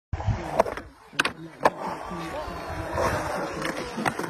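Skateboard on concrete: three sharp clacks of the board in the first two seconds, then its wheels rolling steadily over the concrete.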